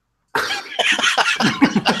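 A person coughing: a rough, rapid fit that starts about a third of a second in and keeps going.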